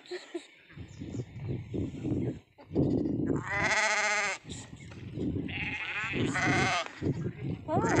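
Sheep and goats of a flock bleating: a loud, quavering bleat about halfway through, then more calls overlapping toward the end.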